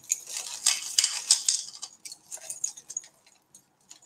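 Jewellery chains and bracelets clinking and jingling lightly as they are handled, with many small clicks that thin out after about two seconds and stop near the end.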